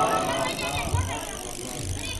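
A congregation's collective salawat recitation dying away at the very start, then a low rumbling background noise over the loudspeaker system.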